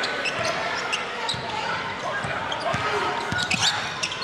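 A basketball dribbled on a hardwood gym floor, with short high sneaker squeaks and a steady background of crowd voices in the arena.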